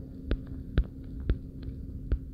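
Soft thumps about twice a second over a steady low hum.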